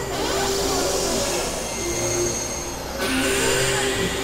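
Experimental electronic synthesizer noise music: layered held drone tones that switch pitch in blocks every second or so, under a dense hiss, with short gliding tones. The upper texture changes abruptly about three seconds in.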